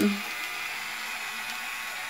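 InStyler Wet-to-Dry rotating hot-barrel hair styler running on a section of hair: a steady, even hiss with a faint motor whir.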